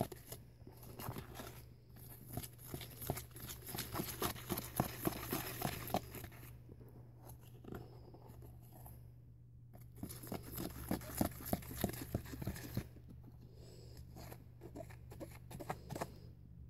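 A utensil stirring and scraping a homemade paste of baking soda, baking powder, toothpaste and dish soap in a plastic container, heard as quick, irregular clicks and scrapes. There is a quieter pause of a few seconds near the middle. A low steady hum runs underneath.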